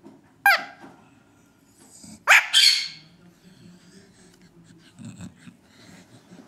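Two short, sharp animal calls: a brief one about half a second in and a louder, longer one at about two and a half seconds.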